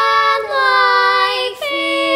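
A girl singing solo in a stage musical, holding three sung notes one after another with almost no accompaniment underneath.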